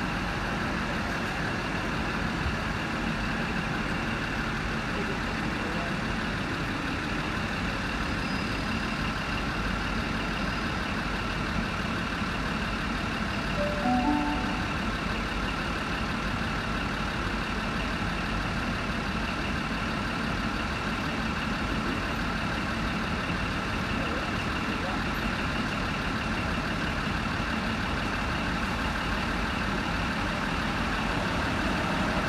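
Diesel trains running at a station platform: a steady engine rumble as a heritage diesel rail motor rolls in. About halfway through there is a brief pitched sound with a few tones at once.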